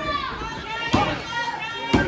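Referee's hand slapping the wrestling ring mat twice, about a second apart, counting a pinfall. High-pitched children's voices and crowd yelling run underneath.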